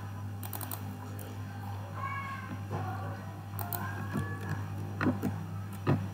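Computer mouse clicks while cells are selected and dragged, the two loudest taps about five and six seconds in, over a steady low hum. Two short, wavering high-pitched calls sound in the background about two and four seconds in.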